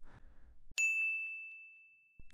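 A single bell-like ding, struck about three quarters of a second in as one clear high tone that rings and fades away over about a second: an editing chime marking a cut to a new section.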